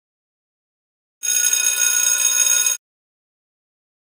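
A bell-like ringing signal, loud and steady, lasting about a second and a half and cutting off sharply. It is the workout timer's cue marking the change to the next exercise.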